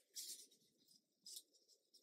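Faint rustle of paper cards and pages being handled, heard twice briefly, otherwise near silence.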